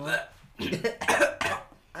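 A man coughing several times in quick succession, starting about half a second in, mixed with a few bits of voice.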